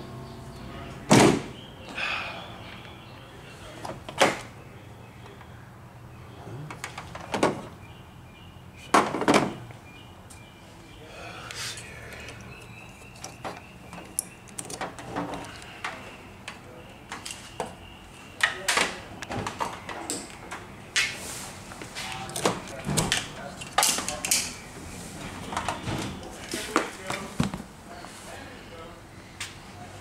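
A series of separate knocks, clunks and clicks from hands working at a car's battery and engine bay, more frequent in the second half. The engine is not running.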